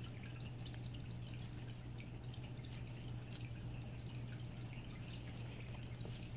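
Faint steady low hum with light water dripping and trickling, as from a running home aquarium's filter.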